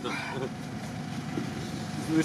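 A vehicle engine idling steadily in the background.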